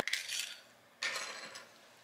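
Small hard plastic shell pieces of a smash-open toy egg clicking together in the hands as they are fitted back into place: two brief bursts of light clatter.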